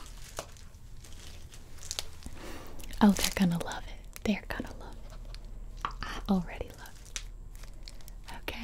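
A woman's voice making a few short, soft wordless sounds around the middle, with faint crinkles and clicks close to the microphone in between.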